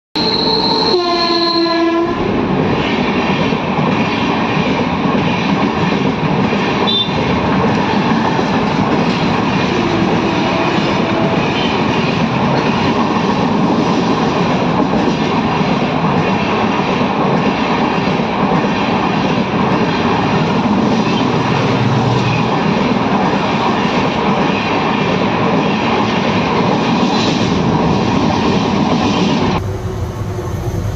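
A train horn sounds briefly about a second in. Then an Indian Railways passenger train of red coaches passes close by at speed, its wheels clattering steadily on the rails. Near the end the sound changes abruptly.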